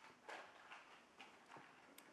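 Near silence: quiet room tone with a few faint rustles and soft clicks.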